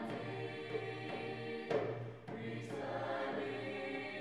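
High school mixed chorale singing in harmony, the voices briefly breaking off and coming back in with a new phrase about two seconds in.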